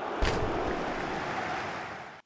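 A steady rushing hiss with no pitch to it, with a single low thump about a quarter second in. The hiss eases off slightly near the end and then cuts out.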